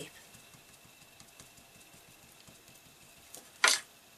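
Faint light taps of a Spectrum Noir alcohol marker nib dotting on acetate over quiet room tone, with one short, loud rush of noise near the end.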